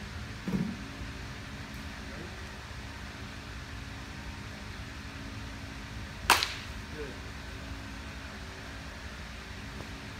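A baseball bat striking a pitched ball once, a single sharp crack about six seconds in, over a steady low hum.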